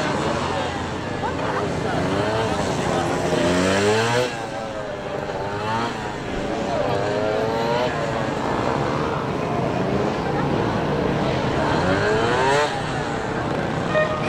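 Honda NSR250R's two-stroke V-twin revved up and down repeatedly through tight turns. The pitch climbs in rising sweeps and falls off sharply, most clearly about four seconds in and again near the end.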